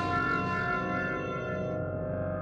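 Ambient background music of sustained, bell-like ringing tones, with a high shimmer that fades out near the end.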